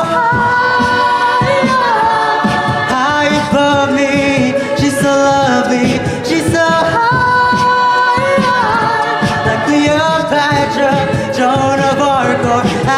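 A cappella group singing held backing chords that slide to new notes every few seconds, with beatboxed vocal percussion keeping a steady beat underneath.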